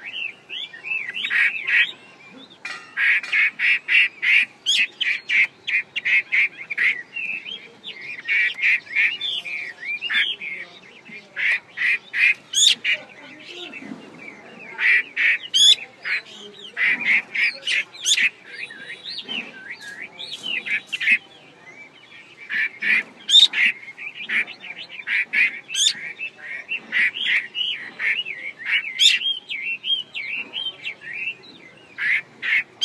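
Female Chinese hwamei giving its 'te' call: runs of rapid, harsh chattering notes, each run lasting a second or two, with a few sharp rising notes. This call is prized by keepers for stirring male hwameis up.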